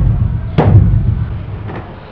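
Open hand banging on a panelled interior door: one loud, booming bang about half a second in, then a faint knock near the end.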